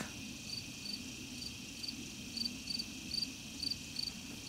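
Insects chirping: a short high chirp repeated about three times a second over a steady high-pitched hiss.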